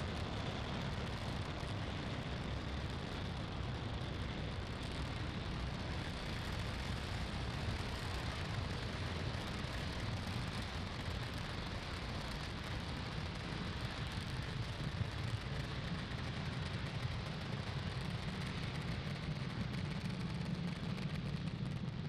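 Falcon 9 rocket's nine Merlin 1D first-stage engines firing during ascent: a steady rumble with a dense hiss that holds an even level throughout.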